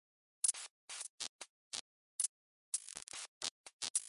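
Quiet, irregular bursts of scratchy, glitch-like digital noise, about ten short crackles with a longer run of them around the three-second mark, used as an electronic outro sound effect.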